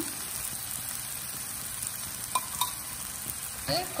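Chopped onions and tomatoes sizzling in oil in a stainless steel frying pan: a steady sizzle, with a couple of faint crackles about two and a half seconds in.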